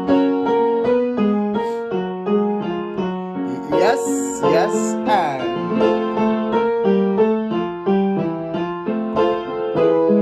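Digital keyboard with a piano sound playing a quick run of notes and chords, the accompaniment to a choir vocal warm-up. A voice slides down in pitch a couple of times about four to five seconds in.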